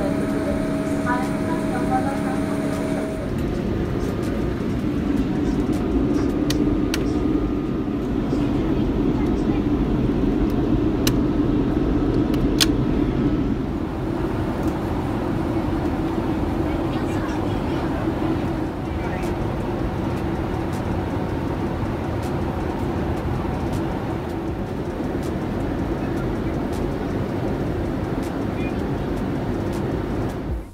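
Boeing 787 Dreamliner airliner in flight: steady engine noise with several held tones for the first three seconds or so, then a cut to the even rush of cabin noise with faint voices and a few sharp clicks.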